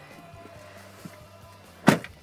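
Quiet background music, a faint tick about a second in, then a single sharp knock near the end.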